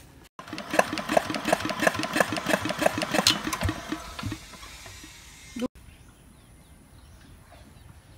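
Small engine driving an irrigation water pump, running with an even chugging beat of about three pulses a second. The sound dies away about four seconds in.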